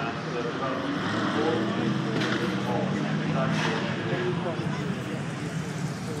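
A C3 Chevrolet Corvette's V8 engine running as the car drives up the hill-climb course and passes close by, with people talking nearby.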